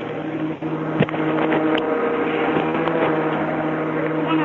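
An open telephone line on hold, carrying a restaurant's background: a steady low hum with a sharp click about a second in.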